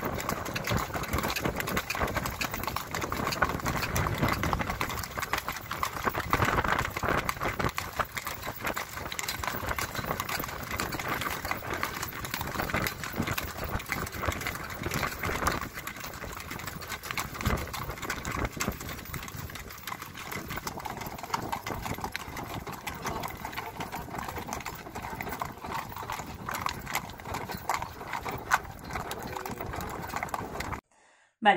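Clip-clop of the hooves of a pair of horses drawing a carriage along a dirt track, a steady run of hoof strikes over the rolling noise of the carriage.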